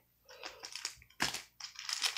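Wrappers of Topps Chrome baseball card packs crinkling and rustling as the packs are handled and stacked, in several short crackles; the loudest comes a little past a second in.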